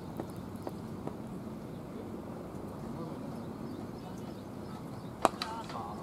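A cricket bat strikes the ball once with a single sharp crack near the end, and players shout straight after it. Faint voices carry on across the ground throughout.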